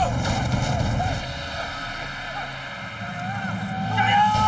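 Off-road side-by-side buggy's engine running with a low rumble, louder in the first second, dipping in the middle and building again near the end, with a few short shouts over it.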